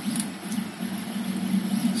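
Stepper motors of a Prusa RepRap 3D printer whining as the print head shuttles back and forth at up to 250 mm/s. The tone holds around one pitch with short rises and falls as the axes accelerate and reverse.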